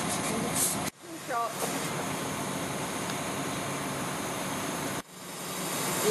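Steady running noise of a truck-mounted crane's diesel engine during a lift, with a brief voice about a second and a half in. The sound cuts off abruptly twice, at about one second and again near the end.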